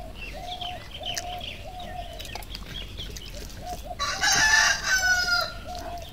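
A rooster crowing once, loud, starting about four seconds in and lasting about a second and a half with a falling end. Under it runs a steady series of short calls about twice a second, with small bird chirps.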